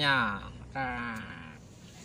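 A voice drawn out in two long calls: the first sliding down in pitch, the second held on one note, with a bleat-like quality.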